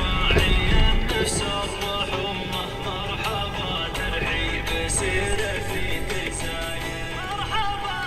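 Music with a male voice singing.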